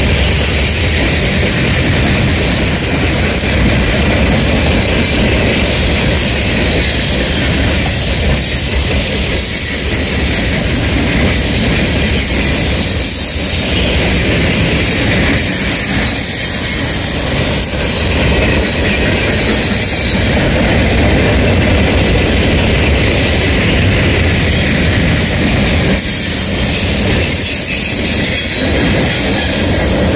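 Loaded coal-coke hopper cars of a freight train rolling past close by: a steady, loud rumble of steel wheels on rail, with thin high squealing from the wheels over it.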